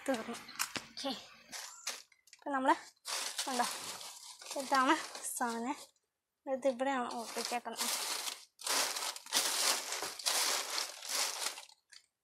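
Plastic food wrappers and bags crinkling as hands rummage through a bin of rubbish, in several bursts, the longest near the end.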